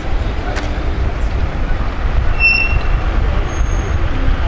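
Low, steady rumble of a slow-moving car convoy's engines and road traffic. About two and a half seconds in, a short high-pitched tone sounds for about half a second.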